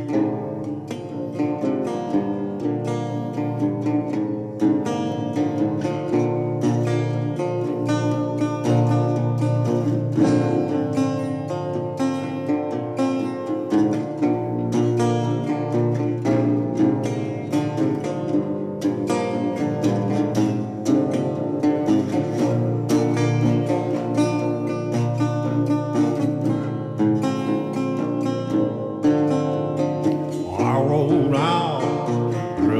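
Acoustic blues played on a metal-bodied resonator guitar, a steady run of plucked notes with no singing.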